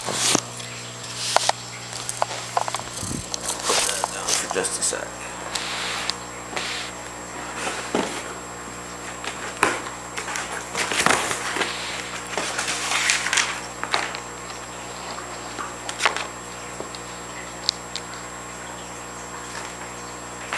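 A cardboard shipping box being opened by hand: irregular scrapes, rustles and sharp clicks as the packing tape is slit and the flaps are pulled open, over a steady low hum.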